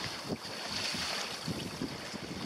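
Wind buffeting the microphone over the rush and splash of choppy water along a sailing canoe's hull as it sails fast in a strong breeze, with a few low thumps.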